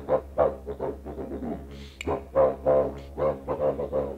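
Didgeridoo played with a continuous low drone, pulsed in a quick rhythm of about four beats a second by changing mouth and voice shapes.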